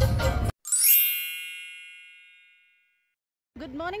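A Garhwali song from the car stereo cuts off abruptly about half a second in. A sparkling chime sound effect follows, sweeping upward into a cluster of bell-like tones that ring out and fade over about two seconds.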